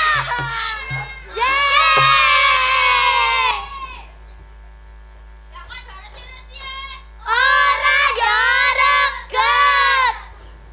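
A group of children calling out together in chorus, in long high-pitched calls repeated several times with short pauses between, with a few low knocks in the first two seconds.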